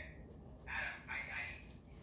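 Faint talking, with no words made out.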